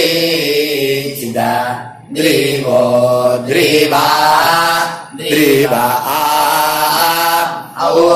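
Sanskrit mantra chanted in long, held melodic phrases, three phrases with short breaks between them.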